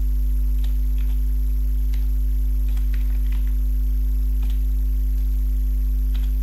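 Loud, steady electrical mains hum with several steady overtones above it, picked up on the recording. A few faint computer-keyboard clicks come through it as code is typed.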